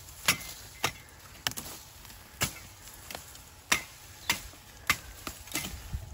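A sharp machete chopping through woody cassava stalks: about eight quick, separate cuts at an uneven pace, roughly one every half second to a second.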